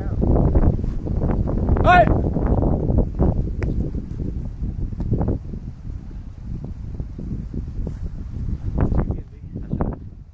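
Wind rumbling on the microphone, with people's voices calling on the field and a brief high-pitched yell about two seconds in.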